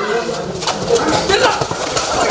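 Players and spectators shouting during a kabaddi raid as the raider is tackled, with the raider's repeated chant mixed in.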